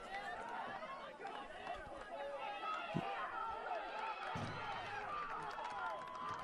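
Many distant voices on a lacrosse field, players and sidelines calling and chattering, with one sharp knock about three seconds in.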